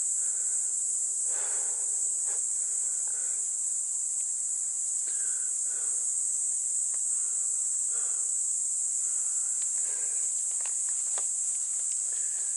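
Steady, high-pitched chorus of insects singing in the forest, with soft footsteps on leaf litter and stones every second or two.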